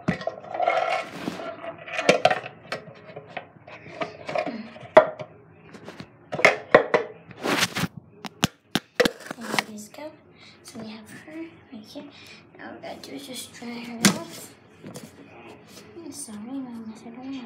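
Handling noise from a phone being picked up, moved and propped up: irregular knocks, clicks and rubbing, with a cluster of sharp clicks around the middle and one more near the end.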